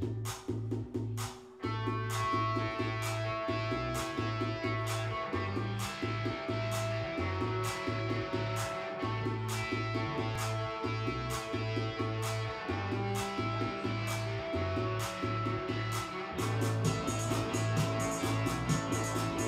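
Live band music: a steady drum beat over a pulsing bass line, with guitar and held chords coming in about two seconds in to fill out the sound.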